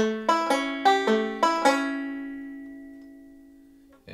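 Resonator five-string banjo picked fingerstyle in a Travis-picking pattern: a quick run of about seven notes, then the last notes are left ringing and fade away over about two seconds.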